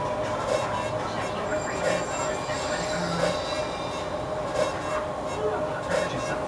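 A machine running steadily, with a soft beat that repeats about every second and a half.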